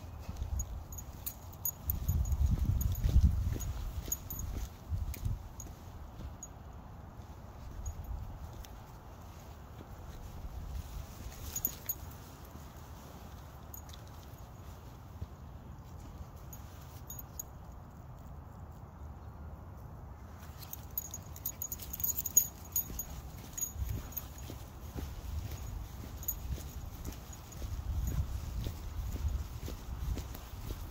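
Outdoor street ambience with a low rumble and scattered light clicks and footfalls, louder in the first few seconds and again near the end as walking resumes on a concrete sidewalk.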